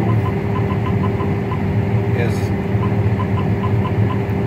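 John Deere CH570 sugarcane harvester's diesel engine running at a steady speed while the machine stands still, heard from inside the cab.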